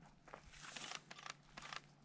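Very faint rustling and a few soft clicks over a low steady hum, barely above near silence.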